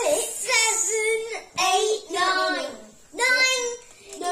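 A child singing three short phrases with held notes.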